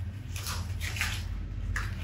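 A rubber resistance band being handled with its knotted loop adjusted, giving a few short rubbing sounds of the band on itself.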